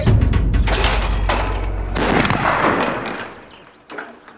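Harquebuses firing black powder: several shots within about two seconds, and the reports die away by about three seconds in.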